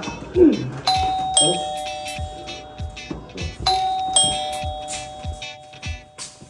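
Electronic doorbell chime rung twice, each a two-note ding-dong, high then lower, that rings on for a couple of seconds. The second ring comes about three seconds after the first.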